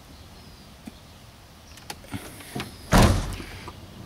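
Front cab door of a Ford van swung shut with a single heavy slam about three seconds in, after a few light clicks of handling.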